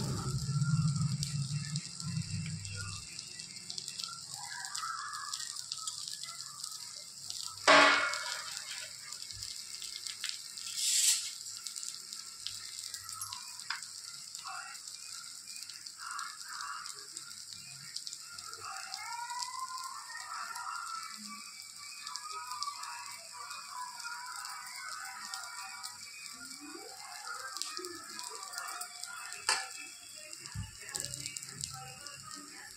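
Dosa frying on a hot tawa: a steady high sizzle of oil over the batter. Two sharp knocks stand out in the first half, the loudest sounds.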